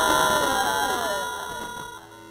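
Several effect-processed cartoon voices overlapping like an echoing crowd, under a couple of steady held tones, fading away toward the end.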